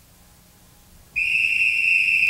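A whistle blown in one long, steady high note that starts suddenly about a second in, after faint hiss.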